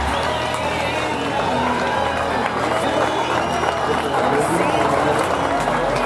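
Indistinct voices of players and onlookers calling and chattering across a cricket ground, over steady outdoor background noise.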